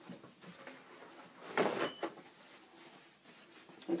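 A paper towel pulled and torn from the roll: one short papery rustle about one and a half seconds in, with the room otherwise quiet.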